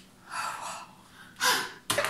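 Two short, breathy gasps of amazement from a woman, about a second apart, followed by a sharp click near the end.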